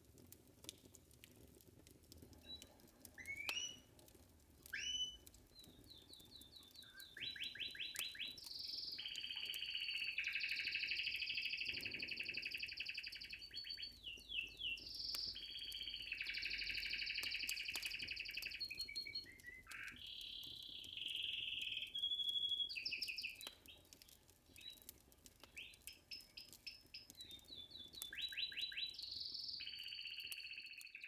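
A canary singing: two short rising chirps, then from a few seconds in a long high-pitched song of rapid repeated notes and rolling trills, broken by short pauses.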